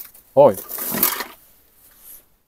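A man exclaims "oj" in surprise, followed by about a second of crinkling and rustling as plastic bags and rubbish are handled and shifted.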